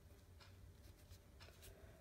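Faint scratching of a pen writing a word on paper, in a few short strokes.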